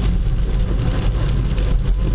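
Inside a moving car's cabin on a wet road: a steady low engine and road rumble with an even hiss of tyres on the wet surface.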